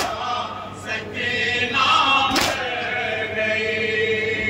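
A group of men chanting a noha (Shia lament) in chorus through a microphone, holding long mournful notes. Two sharp slaps land about two and a half seconds apart, typical of matam, hands striking the chest in time with the lament.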